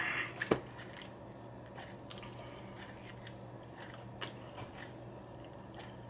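A man biting and chewing a slice of cheese pizza with its crust, with soft, scattered mouth sounds and a sharp click about half a second in. A steady low hum runs underneath.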